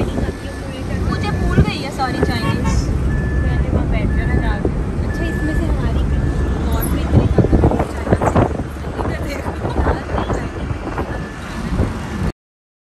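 Car driving in city traffic, heard from inside the cabin: a steady low engine and road rumble with wind on the microphone. A repeating short high beep sounds about once every three-quarters of a second and stops about six seconds in.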